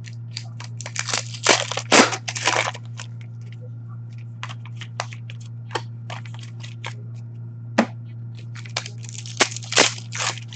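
Shiny foil hockey-card pack wrappers being torn open and crinkled in the hands, with cards handled, making irregular crackles and rustles that are densest about a second in and again near the end. A steady low hum runs beneath.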